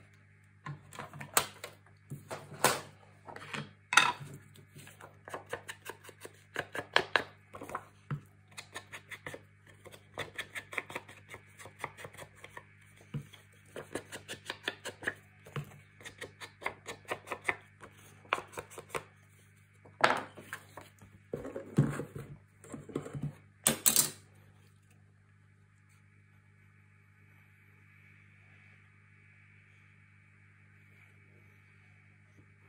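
Rapid, light tapping of a foam ink-blending tool being dabbed on an ink pad and along the edges of a cardstock strip, mixed with knocks of paper and tools being handled on the desk. A few louder knocks come just before the tapping stops, and a faint steady hum carries on after it.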